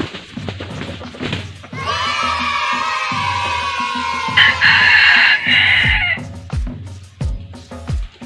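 A rooster crows once, a long drawn-out call that gets louder in its second half, over background music with a steady beat.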